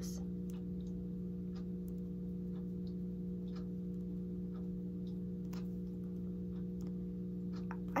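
Faint, irregular small clicks and taps of fingernails and the band's pin as a white Apple Watch sport band is fastened on a wrist, over a steady low hum.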